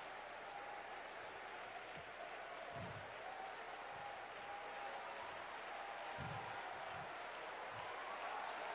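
Congregation applauding and praising: a steady wash of clapping with faint voices calling out behind it.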